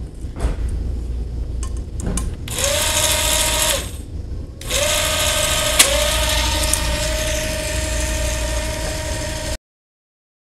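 goBILDA 6,000 RPM motor spinning the two friction-coupled wheels of a paper-airplane launcher: a whine that rises as it spins up, runs about a second and winds down, then spins up again about halfway through. On the second run there is a sharp click about six seconds in, and the whine runs steadily until it cuts off abruptly near the end.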